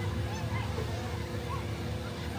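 A spinning fairground ride running, with a steady low rumble and a constant hum from its machinery, and short high rising-and-falling calls over it.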